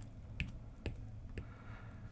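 Faint clicks of a stylus tapping and writing on a tablet's glass screen, about four sharp taps roughly half a second apart with a light scratch of a pen stroke near the end.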